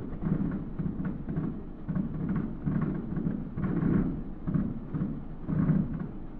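Distant aerial fireworks shells bursting in a quick, irregular string of low booms that run together into a continuous rumble.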